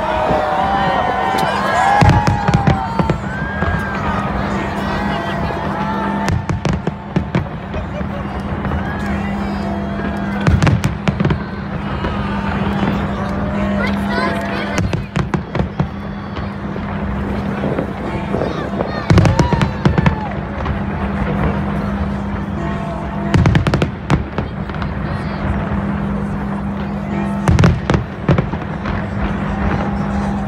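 Aerial fireworks exploding in a large display: a string of sharp bangs at irregular intervals, with heavier volleys about two seconds in, around the middle and near the end. Crowd voices and music carry on underneath.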